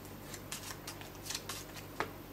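Playing cards being picked up and shuffled by hand: a string of light, quick card flicks and rustles, about eight in two seconds.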